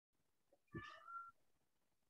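A single faint, short high-pitched call lasting about half a second, rising in pitch at its end, heard over a video call.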